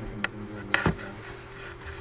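Steady low electrical hum with a few short, sharp clicks in the first second, the loudest about three-quarters of a second in.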